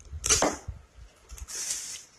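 Cardboard box and picture cards being handled: a short scraping swish, then a longer, higher rustle of card sliding against card partway through, with a few soft knocks.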